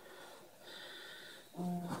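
A person's breathing: a long, hissy exhale starting a little over half a second in, then a brief hummed voice sound near the end.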